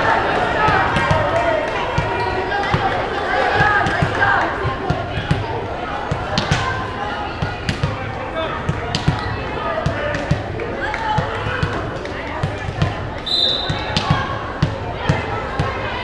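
Volleyball being bounced on a hardwood gym floor, repeated thumps, over steady crowd chatter in a large echoing gym. A short high whistle blast sounds near the end, the referee's signal for the serve.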